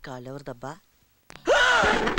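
A man's voice says a few short words, then about one and a half seconds in gives a sudden loud, breathy cry whose pitch rises and then falls.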